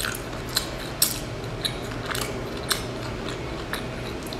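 Close-miked chewing of a baked pastry, with crisp wet mouth clicks about twice a second.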